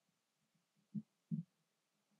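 Two dull, low thumps about a third of a second apart, about a second in, over a faint steady hum.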